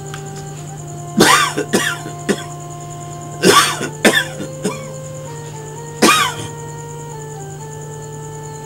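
A person coughing in harsh fits, a few coughs at a time, in three clusters about a second, three and a half seconds and six seconds in. Under it runs background music of long held notes that shift in pitch.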